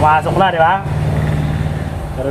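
A man's voice briefly in the first second, over a steady low hum that runs throughout.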